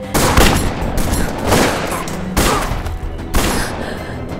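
Gunfire: about five loud gunshots spread out roughly a second apart, each with a ringing tail.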